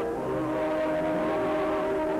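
Orchestral music from an early sound-film soundtrack, with long held chords.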